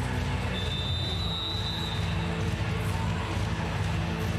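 Steady arena background in a roofed stadium during a timeout: music over the public-address system with a constant bass line, under crowd noise. A high steady tone sounds for about a second and a half, starting about half a second in.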